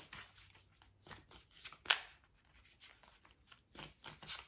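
A deck of oracle cards being shuffled by hand: a run of soft, irregular card slaps and rustles, the sharpest one about two seconds in.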